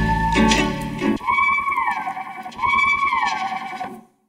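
Sample-based hip-hop instrumental beat: drums with a heavy kick run for about the first second, then drop out, leaving a sampled melodic line that swoops up and back down twice. The music stops right at the end.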